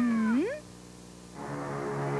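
A cat's short meow that holds low and then rises sharply, lasting about half a second. Soft music with long held notes comes in about one and a half seconds in.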